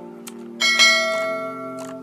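Background music with sustained chords, and a bright bell strike a little over half a second in that rings and fades over about a second.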